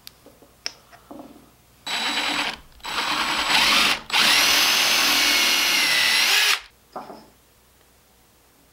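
DeWalt drill boring a small hole, with a tape-flagged bit, into the rim of a black walnut pepper grinder body. The drill runs in two short bursts and then a longer one of about two and a half seconds, a steady whine that rises a little just before it stops. A few light clicks of parts being handled come before it.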